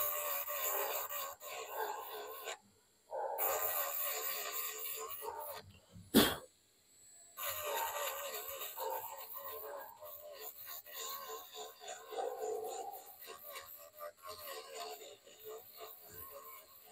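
A handheld rotary micro grinder at low speed, grinding down an IC on a phone display panel; its whine wavers in pitch and stops briefly twice. There is a sharp click about six seconds in.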